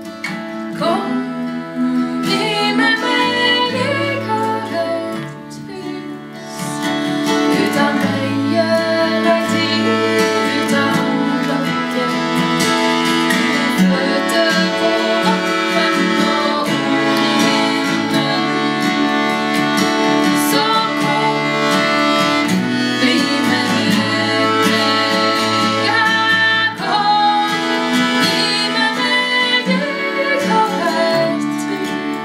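Acoustic guitar and button accordion playing a Norwegian folk song, with two women's voices singing together. The music dips softer about five seconds in, then fills out again.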